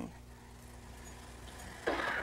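A pause in speech holding only the steady low mains hum and hiss of an old television recording, broken near the end by a sharp intake of breath from a woman about to speak.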